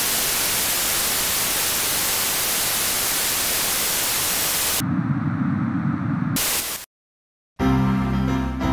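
Television static: a loud, even hiss of white noise. About five seconds in, it drops to a low rumbling noise for a second and a half, hisses again briefly, then cuts off into silence. Music starts just before the end.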